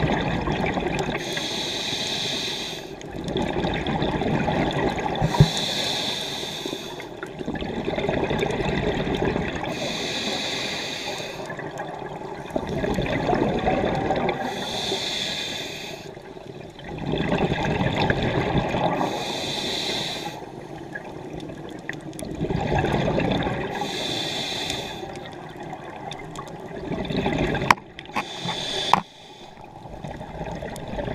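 Scuba diver breathing through a regulator underwater: a hiss on each inhalation alternating with a gurgling rush of exhaled bubbles, in a steady rhythm of about one breath every four to five seconds.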